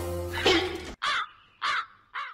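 Background music cuts off abruptly about a second in, followed by three short, evenly spaced crow caws against dead silence.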